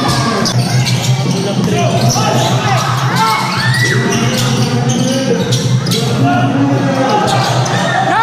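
A basketball being dribbled on a hard court, sharp bounces repeating, over the steady chatter and shouts of a large crowd of spectators.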